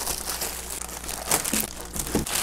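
Clear plastic bag crinkling and rustling as it is gripped and pulled about, with a few sharper crackles in the second half.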